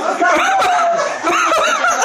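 A group of men laughing and calling out together, with one long drawn-out voice in the first half and quick bursts of laughter toward the end.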